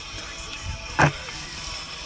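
Mountain bike rolling down a dirt singletrack, with a steady rush of tyre and wind noise. A single sharp knock from the bike about a second in is the loudest sound.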